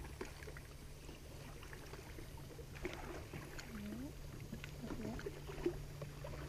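Quiet hum with scattered light clicks and knocks from a fishing rod and reel being handled while a hooked fish is played. A faint voice murmurs briefly past the middle.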